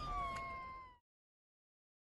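A single high-pitched cry, gliding slowly down in pitch for about a second, then the sound cuts off abruptly.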